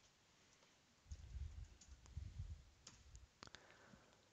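A few faint computer mouse clicks, scattered through the second half, over near-silent room tone with a faint low rumble in the middle.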